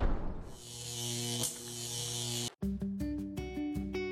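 Music for a logo intro: drum hits fade out, then a held chord with a hiss over it cuts off abruptly about two and a half seconds in. After a brief gap, rhythmic background music starts.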